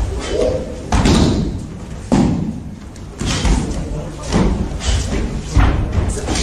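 Karate sparring: a series of sudden thumps and slams from kicks and from bodies landing on the mats, about one a second, among men's shouting voices in a large hall.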